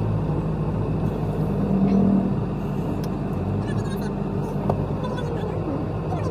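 Car engine and road noise heard from inside the cabin while driving slowly in city traffic: a steady low rumble that swells slightly about two seconds in.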